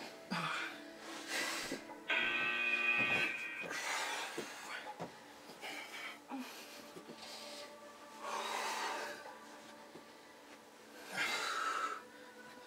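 Heavy, forceful breathing from people straining through ab crunches: noisy exhales come every few seconds. About two seconds in there is a louder, drawn-out strained vocal sound. Quiet background music with steady tones plays underneath.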